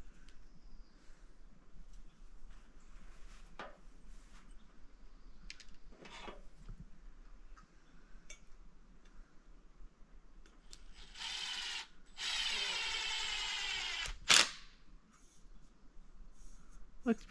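Power drill with a socket driving a lag screw into a tree trunk. It runs in two bursts in the last third, a short one and then one of about two seconds, followed by a single sharp knock. Faint clicks and handling sounds come before.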